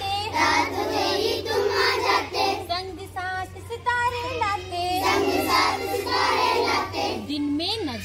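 Group of children singing a Hindi rhyme together in chorus, line after line.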